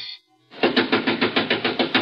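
Rapid pounding on a door, a fast, even run of knocks at about eight a second, starting about half a second in.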